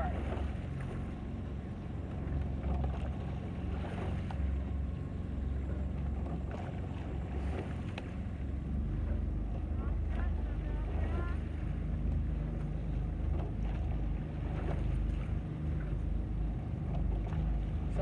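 Low, steady rumble of a small motorboat engine running at low speed, with wind on the microphone. A faint voice calls briefly about ten seconds in.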